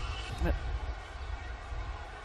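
Quiet outdoor cricket-ground ambience: a low, steady rumble with a short snippet of a voice about half a second in.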